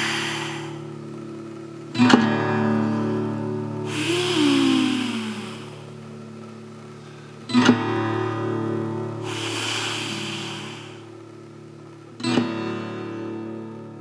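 An acoustic guitar strummed three times, a chord about every five seconds, each left to ring and fade. Between the chords, breathy blowing into cupped hands gives a soft hooting tone that bends up and down in pitch.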